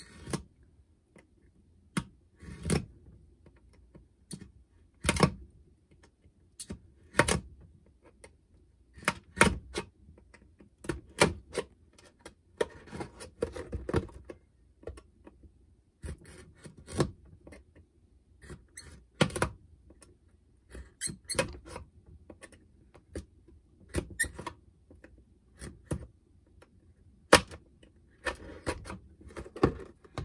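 X-Acto knife blade scoring and cutting a thin clear plastic bottle. The sound is sharp scratchy clicks and short scrapes at irregular intervals, roughly one every second or two, with a longer run of scratching about halfway through.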